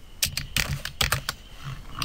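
Computer keyboard being typed on: a run of quick, irregular key clicks as a line of code is entered.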